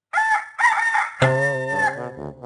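A rooster crowing, a cock-a-doodle-doo in three parts with a long held final note. Music comes in under it about a second in.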